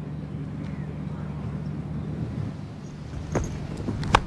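Broadcast background sound of a cricket ground: a steady low hum under faint ambient noise, with one short sharp knock about three and a half seconds in as the delivery comes down.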